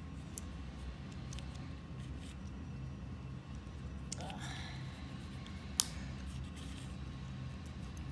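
Small plastic Lego pieces clicking and tapping as they are handled and pressed together, with one sharp snap a little before six seconds in as a piece seats. A steady low hum runs underneath.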